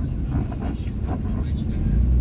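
Car driving at low speed, heard from inside the cabin: a steady low engine and road rumble.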